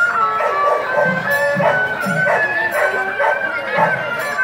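Live traditional Vietnamese procession music: a high, nasal wind instrument plays a bending melody over steady hand-drum beats and crisp percussion hits.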